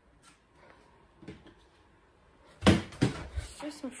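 Something falling in a room: a sudden loud thump about two and a half seconds in, then a few lighter knocks as it bounces and settles.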